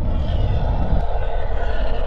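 Title-sequence sound effect: a loud, deep, steady rumble with a hissing upper layer that swells in at the start, like a jet passing.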